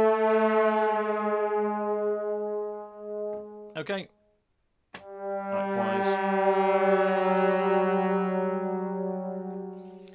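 Sampled open French horns and trombones (ProjectSAM Pandora's Horns & Bones Open Suspense Bends patch) holding a loud sustained brass chord twice: the first cuts off about three and a half seconds in, and the second enters about a second later, swells and fades out near the end.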